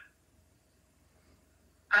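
Near silence: quiet room tone with a faint steady hum, between spoken phrases; a woman's voice starts again near the end.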